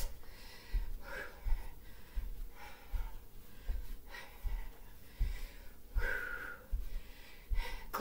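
A woman breathing while she exercises, with soft low thuds of bare feet on a carpeted floor about twice a second as she steps through kickbacks.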